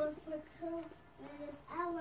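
A child singing a string of short, level notes in a sing-song voice.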